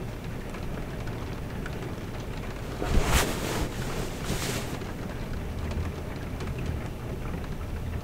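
Steady rain ambience with a low rumble underneath, and two brief soft rustles about three and four and a half seconds in.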